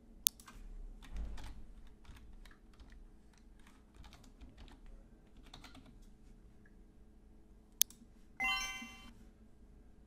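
Scattered computer keyboard and mouse clicks at a desk, with a sharp click just after the start and another near the end. A short electronic chime-like tone sounds right after the second sharp click.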